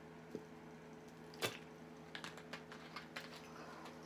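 Faint clicks and knocks of a plastic drink bottle being handled and set down, the loudest knock about a second and a half in, over a steady low hum.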